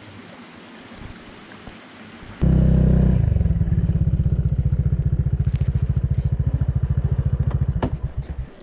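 Quiet outdoor background, then suddenly, about two and a half seconds in, a motorcycle engine running at low speed with a fast, even throbbing beat.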